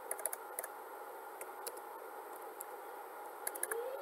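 Computer keyboard keys clicking as text is typed and deleted: a few scattered keystrokes, then a quicker cluster near the end, over a faint steady hum.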